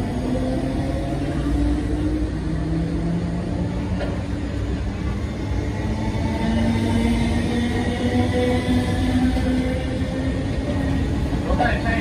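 Older MTR East Rail Line electric multiple unit pulling away from the platform: electric traction whine of several tones that slowly shift and rise in pitch over a low rumble of wheels on rail.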